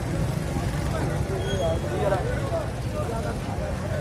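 Outdoor market bustle: background voices of people talking over a steady low rumble, likely from street traffic.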